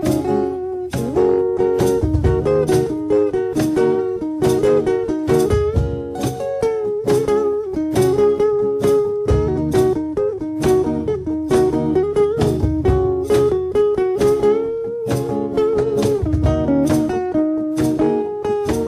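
Electric guitar played solo and unsung, picking a steady run of single notes and chords that ring on between strokes: the instrumental intro before the vocals come in.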